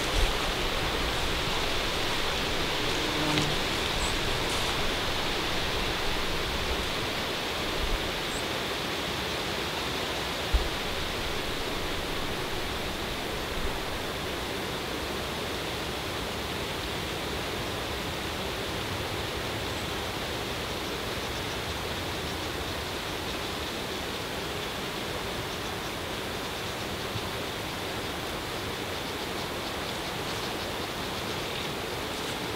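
Steady outdoor rushing hiss, like moving air or distant running water, with a few soft low knocks, the sharpest about ten seconds in.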